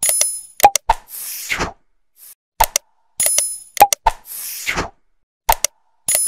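Sound effects of an animated like-and-subscribe end card: sharp mouse clicks, a bright ringing ding, two more clicks and a short whoosh, the sequence repeating about every three seconds.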